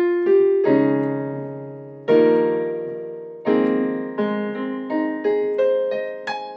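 Piano sound from a digital stage keyboard: chords struck and left to ring, then quicker notes in the last two seconds.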